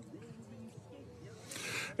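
A lull in close speech with faint background voices, ending with a short, audible breath drawn in through the microphone just before speech starts again.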